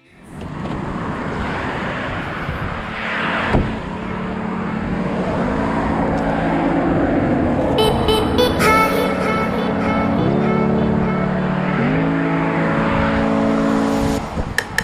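Steady rushing road noise from movement along a paved road. Background music with sliding bass notes comes in about six seconds in and grows fuller near eight seconds.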